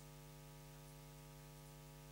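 Near silence: a faint, steady electrical hum with light hiss underneath, unchanging throughout.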